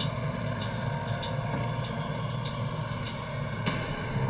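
A steady low droning hum with several faint, even tones above it and a few faint clicks.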